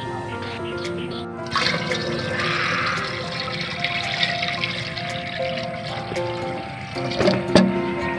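Water poured in a heavy stream into the stainless-steel tank of a knapsack sprayer, a rush of filling that starts about one and a half seconds in and stops around seven seconds, followed by a few knocks. Background music plays throughout.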